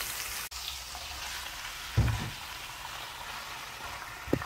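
Food sizzling steadily in hot oil in a wok: sliced onions and whole spices frying. About two seconds in there is a single low thump.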